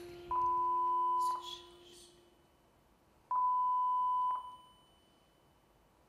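Two electronic beeps, each one steady tone held for about a second, about three seconds apart, with a click at the start and end of each.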